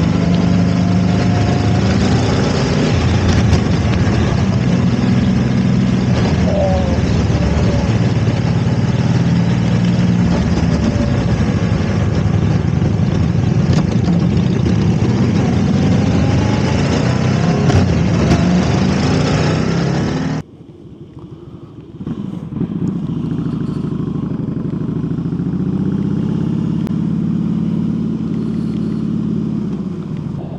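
Harley-Davidson Heritage Softail's V-twin running at road speed under heavy wind and road rush. About two-thirds of the way through, the sound cuts off abruptly to a quieter, muffled engine note that then rises as the bike accelerates.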